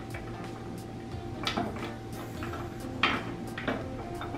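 Frozen fruit ice cubes knocking against a glass food container as they are picked out by hand: two short clinks, about a second and a half apart.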